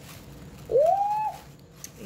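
A woman's voice giving a single drawn-out "ooh" of delight that rises in pitch and then holds.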